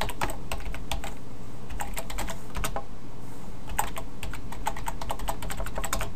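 Typing on a computer keyboard: several quick runs of keystroke clicks separated by short pauses, over a steady low hum.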